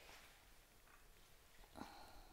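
Near silence, with one faint short noise near the end.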